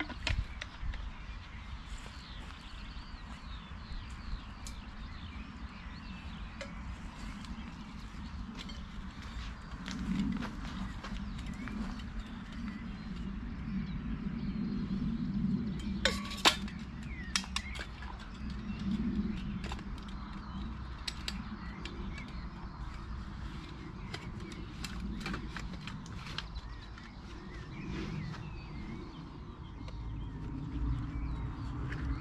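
Metal camping cookware being handled and packed away: scattered clinks and knocks of steel mugs and a flask, the loudest about sixteen seconds in, over a steady low outdoor rumble with a few bird chirps.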